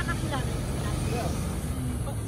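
Highway traffic passing: a steady rumble of tyres and engines from vehicles on the road.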